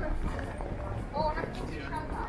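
People's voices talking in the background, with footsteps on a hard floor.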